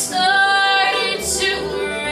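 A woman singing a slow folk ballad in long held notes, backed by strummed acoustic guitar, upright bass and mandolin.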